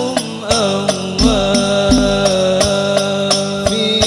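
Al-Banjari sholawat performance: male voices singing a held, ornamented devotional melody over frame drums (rebana) struck in a steady rhythm, with some deep drum strokes among the sharper hits.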